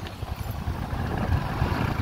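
Motorcycle ride: a low, uneven rumble of the bike's engine and road noise, with wind buffeting the microphone.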